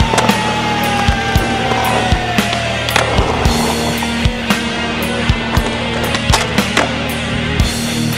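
Skateboard wheels rolling on concrete, with sharp clacks and knocks from the board, under a music soundtrack.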